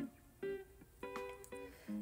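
Quiet background music: a few plucked guitar notes ringing out one after another.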